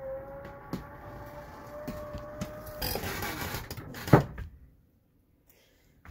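Slide-out room mechanism of a 2005 Monaco Windsor motorhome running as the room is brought in, a steady whine that creeps slightly up in pitch. Just under three seconds in the whine gives way to a rougher rushing noise, and a sharp knock follows about four seconds in as it stops.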